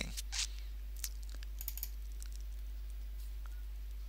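A few faint, scattered clicks from computer use at a desk, over a steady low electrical hum from the recording.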